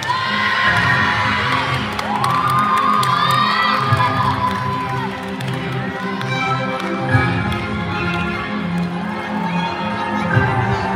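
Music for a rhythmic gymnastics clubs routine, with spectators cheering and shouting over it. The long rising and falling shouts come mostly in the first half.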